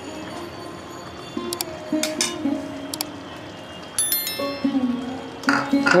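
Background music of melodic instrumental notes, with a few sharp clicks and a bright bell-like chime about four seconds in.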